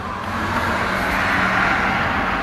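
Steady vehicle noise: a rushing hiss with a faint low hum underneath, swelling a little toward the middle and then easing.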